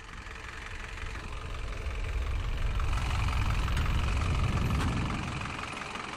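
A Land Rover's engine running as it drives past, the rumble swelling louder over the first couple of seconds and easing off near the end.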